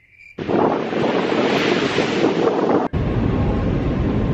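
Crickets chirping in a steady pulse, cut off abruptly less than half a second in by loud wind noise on the microphone mixed with ocean surf. A second abrupt cut just before three seconds brings a deeper, steadier wind rumble.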